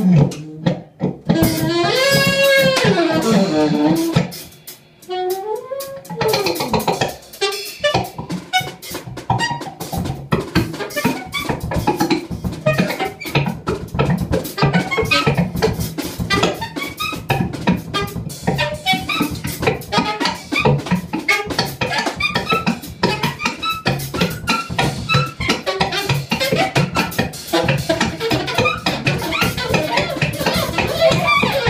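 Free-improvised music from a trio of daxophone, alto saxophone and drum kit. The first few seconds hold gliding tones that bend up and down in pitch, with a short dip about five seconds in; then busy, dense drumming with scattered short pitched notes runs on.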